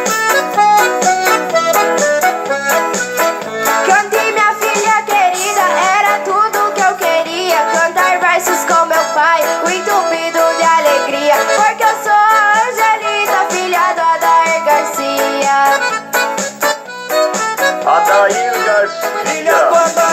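Gaúcho-style music: an accordion plays an instrumental passage over a steady beat, between sung trova verses.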